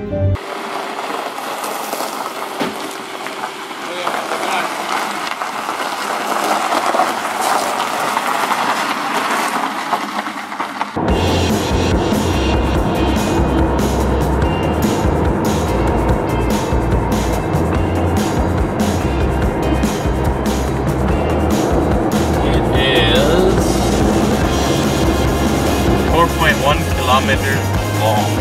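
Road and engine noise inside a moving car. For about the first ten seconds it is a thin hiss with no low end; then a steady, deep rumble comes in suddenly and carries on.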